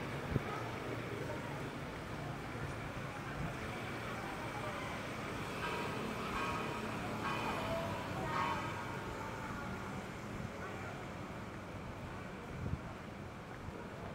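Steady city street traffic hum, with voices passing briefly in the middle and a single small tap just after the start.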